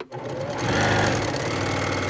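Electric domestic sewing machine stitching a seam through quilting cotton. It picks up speed over the first half second, then runs at a steady, rapid stitch.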